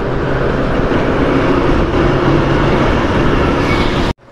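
Motorcycle riding at speed, heard through a helmet-mounted microphone: loud, steady wind and road noise with a low engine drone underneath, while passing close alongside a truck.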